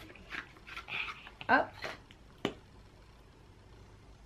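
A single sharp click about two and a half seconds in, typical of the cap of a plastic cream tube snapping open.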